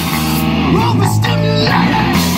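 Live punk rock band playing: distorted electric guitar and bass guitar over drums. About half a second in the cymbals and drums drop back, leaving mostly the guitar and bass notes ringing.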